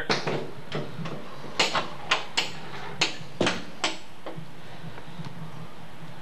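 A bathroom stall door being pushed open, its latch and door knocking and clicking in a run of about ten sharp clacks over the first four seconds.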